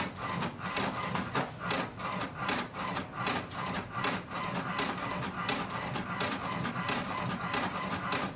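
HP DeskJet 2742e inkjet printer printing a page: the print carriage sweeps back and forth in a steady rhythm, about two or three strokes a second, as the paper feeds through.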